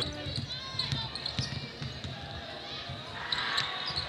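Basketball bouncing on a hardwood arena court as it is dribbled up the floor, over the steady background noise of an arena crowd, with scattered short knocks.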